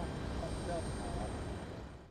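Airport apron ambience: a low, steady noise of distant jet aircraft engines that fades out near the end.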